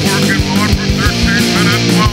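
Rock music, punk style: distorted electric guitars with drums hitting steadily and a wavering high melody line on top.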